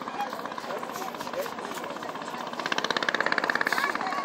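Background voices of people talking, not directed at the microphone. A little past halfway a loud, rapid buzzing rattle sounds for just over a second; its source is not shown.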